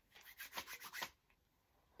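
Palms rubbed quickly together: a faint run of short, rapid skin-on-skin rubbing strokes, about eight of them, lasting about a second.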